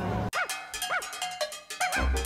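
Short comic segment jingle: a cartoon dog barks three times over light ringing percussion, cutting in sharply after the street sound stops.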